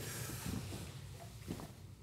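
Quiet room tone with a few faint short ticks.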